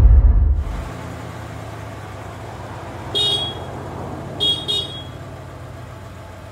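A deep boom dies away in the first second. After it, a vehicle engine runs steadily, heard from inside the cab. A horn toots once about three seconds in, and twice more in quick succession a second later.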